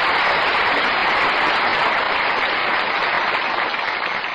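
Studio audience applauding: a steady wash of clapping that eases a little near the end, heard through an old, narrow-band radio broadcast recording.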